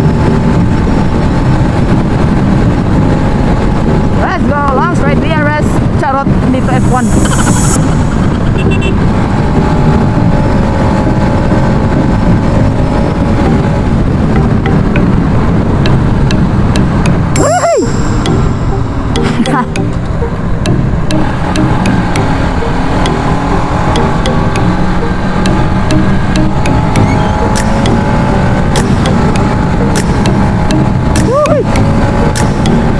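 Motorcycle riding along a highway: the engine runs under heavy wind rush on the rider's camera microphone, with the engine pitch sweeping up and down a few times.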